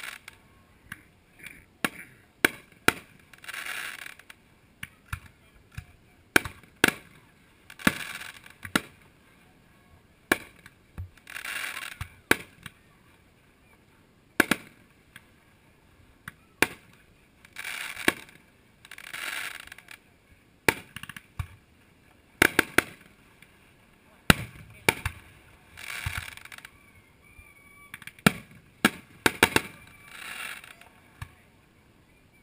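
Aerial firework shells bursting: sharp bangs at irregular intervals, well over a dozen, with several rushes of noise lasting about a second each in between.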